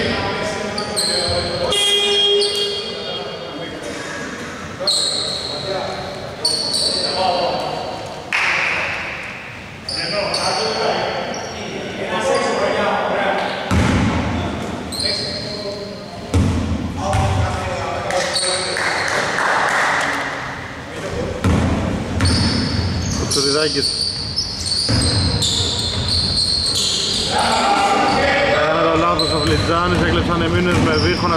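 Basketball bouncing on a hardwood gym floor during play, with players' voices calling out, in a large echoing hall.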